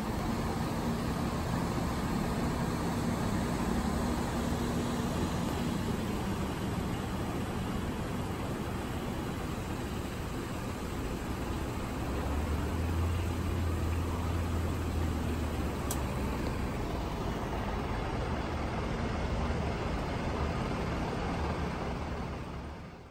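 Steady street noise with vehicle engines idling, a deeper engine hum swelling for a few seconds about halfway through.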